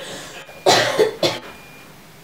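A woman sobbing in three short, harsh bursts about a second in.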